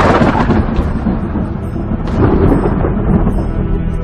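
Thunder rumbling over film score music: a loud clap right at the start that rolls on, then swells again about two seconds in.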